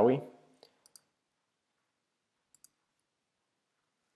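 A few faint computer mouse clicks: a couple about a second in and a quick pair about two and a half seconds in, with near silence between.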